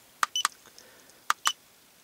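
Keypad buttons on a handheld iCarSoft i910 scan tool being pressed: four short clicks, in two pairs about a second apart, as the menu is stepped back.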